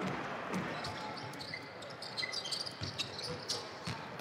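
Arena crowd noise from a basketball game, with a few faint knocks of a ball bouncing on the hardwood court and a couple of brief high squeaks, as of sneakers on the floor.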